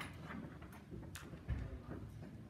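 Quiet hall room noise with a few scattered knocks and clicks, the loudest a low thump about one and a half seconds in.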